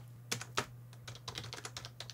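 Computer keyboard typing: a quick run of light key clicks as a line of text is typed.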